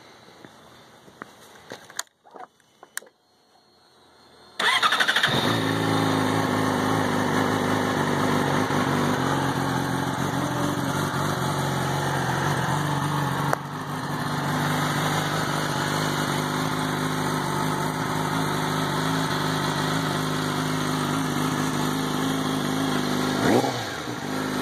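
Yamaha R6 inline-four sport bike with an M4 mid-pipe/Y-pipe exhaust starting up: a few clicks, then the engine catches about four and a half seconds in and idles steadily and loudly. Near the end the throttle is blipped once in a short rising rev.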